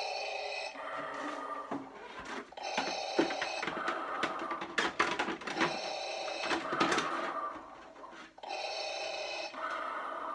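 Hasbro Black Series electronic Darth Vader helmet playing Vader's mechanical breathing through its built-in speaker, an in-breath and an out-breath about every three seconds. A few clicks and knocks of the helmet's plastic parts being handled fall in the middle.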